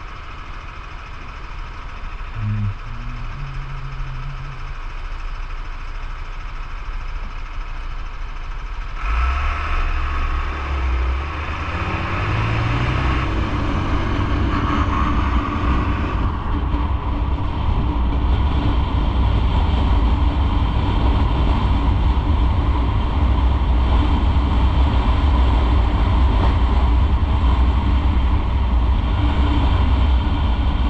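Motorcycle idling at a traffic light, then pulling away about nine seconds in and getting up to speed. From then on the ride is louder and steady.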